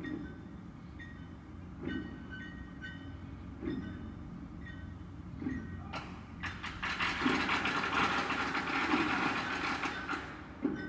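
Short high electronic beeps repeat every second or two. From about six seconds in, a loud rushing noise of a passing vehicle builds and holds.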